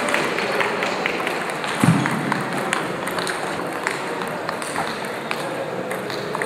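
Table tennis balls clicking off bats and tables in irregular rally strokes, from several tables at once. A single low thump about two seconds in.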